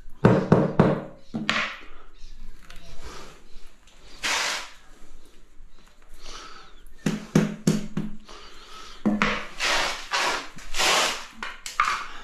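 Rubber mallet tapping a large-format tile down into a wet mortar bed: clusters of short, dull knocks, with a brief scraping sound about four seconds in.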